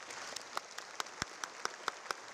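Audience applauding: many hands clapping together, with a few louder single claps standing out from the crowd.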